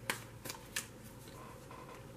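A deck of tarot cards being shuffled by hand: a few crisp card snaps in the first second, then softer rustling of the cards.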